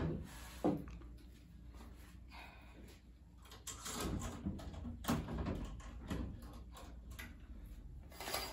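Knocks, clicks and rattles of a metal-framed window being handled and its central latch worked, with the curtains being pulled across near the end.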